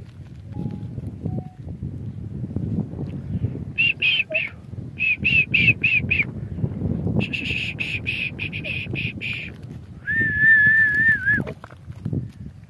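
A person whistling high, short chirps, a few a second, from about four seconds in, then a quicker run of chirps, then one long wavering whistle near the end. A low rustling rumble runs underneath.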